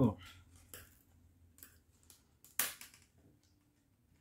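Wooden knitting needles clicking and scraping against each other and the yarn as stitches are worked and the knitting is handled: a few short separate clicks, the loudest about two and a half seconds in.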